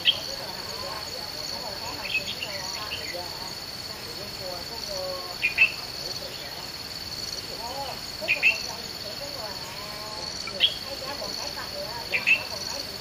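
An insect trilling steadily at a high pitch, with short sharp chirps breaking in every two to three seconds as the loudest sounds, over faint wavering calls lower down.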